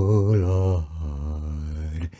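Unaccompanied man's singing voice holding a long note with vibrato, then dropping to a lower, steadier and softer held note about a second in.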